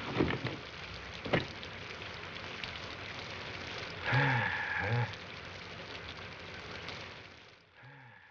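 Steady rain falling, with one sharp click about a second and a half in and two short, low voiced sounds from a man a little after four seconds. The rain fades away near the end.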